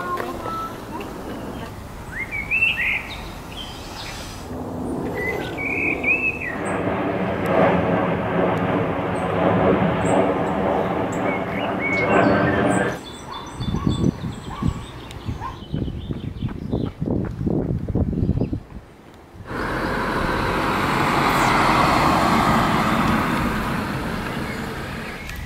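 Outdoor street ambience: small birds chirping in the first few seconds, then engine noise of passing traffic, and a car going by near the end, its noise swelling and fading.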